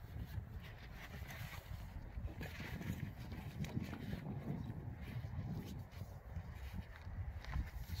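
Low, uneven wind rumble on the microphone, with faint rustling of a large fabric thermal blind as it is lifted and draped over a van windscreen.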